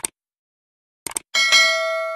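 Subscribe-button sound effects: a click at the start, two quick clicks about a second in, then a notification bell ding that rings on and slowly fades.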